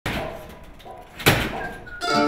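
Hand-truck (dolly) wheels smacking onto stair treads as a boxed load is moved step by step: a knock at the start, a faint one shortly before a second in, and the loudest, sharpest one about a second and a quarter in.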